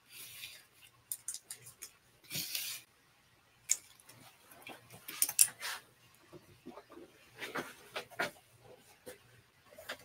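Hands moving small hard nail-supply items across a paper-covered tabletop: scattered light clicks and taps, with a short rustle about two and a half seconds in.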